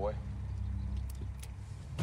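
Playback of a TV drama's soundtrack: the end of a man's short line, then a steady low rumble with a couple of faint clicks.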